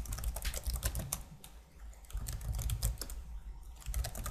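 Typing on a computer keyboard: quick runs of key clicks with a short lull about halfway through.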